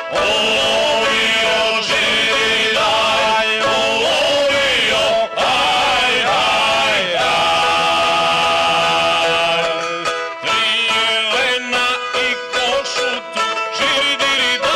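Male folk group singing ojkanje, the traditional Krajina Serb singing style, in long held notes with a shaking, wavering pitch. About ten seconds in the singing turns choppier, with shorter notes and brief breaks.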